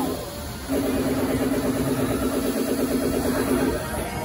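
Drop tower ride's machinery giving a steady, even-pitched hum with a fast buzz through it as the gondola is dropped. The hum breaks off for a moment just after the start, comes back, and cuts off shortly before the end.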